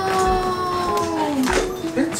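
A dog howling: one long call that slowly falls in pitch and drops away about one and a half seconds in.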